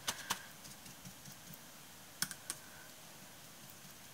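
Paintbrush tapping against a textured, painted glass bottle: two light clicks at the start and two more a little past halfway, over faint room tone.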